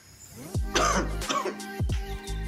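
Background music with deep, downward-sliding bass notes. It drops out briefly at the start, then a short, loud burst of voice comes in about a second in.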